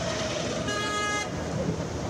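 A vehicle horn sounds once, briefly, about two-thirds of a second in, over a steady background of outdoor noise.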